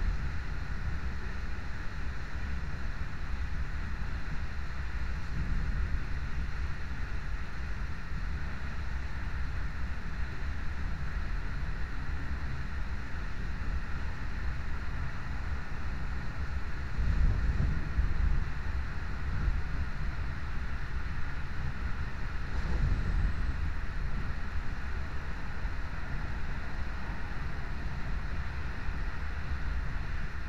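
Running noise of a moving passenger train heard from inside the carriage: a steady low rumble of wheels on the track with a rush of air. It gets louder briefly about two-thirds of the way in, and again a few seconds later.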